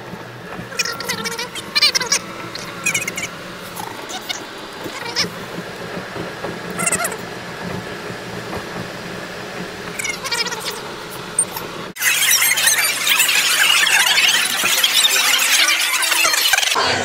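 Steady low hum of a car on the road, heard from inside the cabin, with short high-pitched sounds now and then. About twelve seconds in it cuts abruptly to the loud, dense din of a crowded room full of people talking at once.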